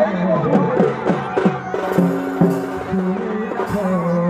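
Live folk dance music: a two-headed hand drum played in quick strokes, several of them sliding down in pitch, over steady held notes.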